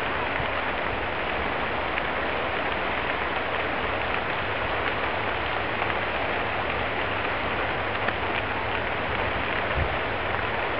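Brush and trees burning in a wildfire: a steady, dense crackling hiss with a few sharper pops.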